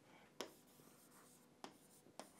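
Faint sharp taps of a pen or stylus on a writing surface, twice: about half a second in and again near the end, with only room tone between.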